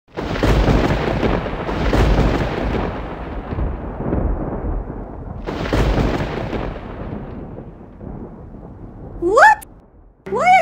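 Thunder sound effect: three deep rumbling claps, at the start, about two seconds in and about five and a half seconds in, each dying away slowly. Near the end comes a short rising vocal cry.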